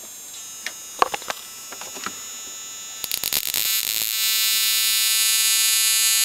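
Flyback transformer driven by a 555-based ignition-coil driver, whining at a steady high pitch with occasional spark snaps. About three seconds in the sparks begin crackling fast and the buzz grows louder and fuller. It is throwing sparks rather than a steady arc, a sign that the drive frequency is not yet right.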